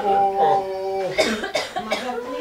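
A voice holds one drawn-out note for about a second, then a person coughs several times in quick succession.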